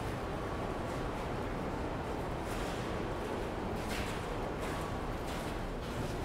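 Steady background room noise in a large hall, with a few faint rustles.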